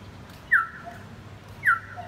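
An animal calling twice, about a second apart: two short, loud yelps, each dropping sharply in pitch and then holding for a moment.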